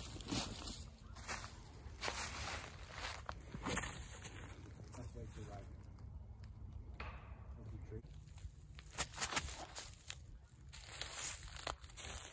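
Footsteps crunching through dry fallen leaves, irregular steps.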